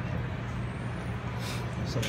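Steady low machine hum, with a couple of faint clicks near the end.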